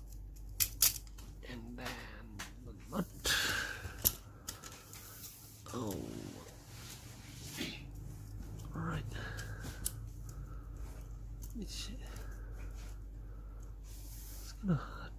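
Small clicks, taps and scrapes of hard plastic and carbon parts being handled as a screw and rear stabilizer plate are fitted to a Mini 4WD car chassis.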